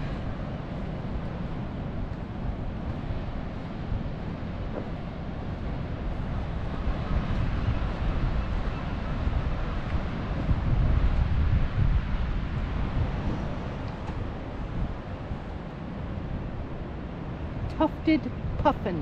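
Wind buffeting the microphone: a gusting low rumble that swells about ten seconds in and eases off again.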